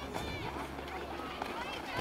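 Shouted calls from players and onlookers during a youth football match, a few short high-pitched shouts over a steady low rumble.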